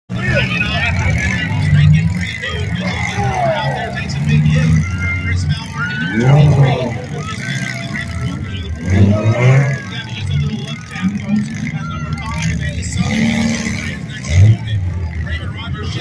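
Several demolition-derby car engines running and revving together, their pitch rising and falling as the cars accelerate and ram each other, with a sudden loud hit near the end.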